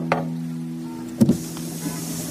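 Radio-advert sound effects: a held music chord with a few light percussive hits stops with a thump about a second in, and car and street traffic noise takes over.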